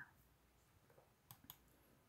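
Near silence with a few faint clicks around the middle of the pause.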